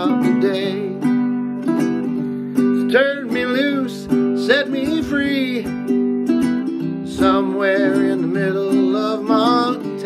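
Two ukuleles strummed together in an instrumental break, with a melody line sliding over the chords.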